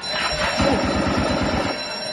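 A ringing, bell-like sound that starts suddenly, with a fast rattle in it from about half a second in until near the end.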